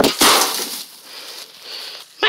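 An old CRT television knocked over onto dry leaf litter: one loud, short crash right at the start, then rustling in the dry leaves.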